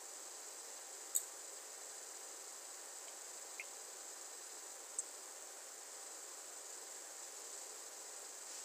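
Faint room tone: a steady high-pitched hiss from the recording microphone, broken by a brief click about a second in and a softer one about five seconds in.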